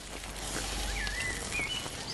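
Steady outdoor background hiss, with a short warbling bird call about a second in and a second brief one near the end.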